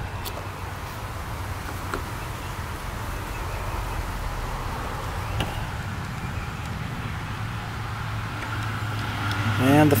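Steady outdoor background noise with a continuous low hum, broken by a few faint clicks.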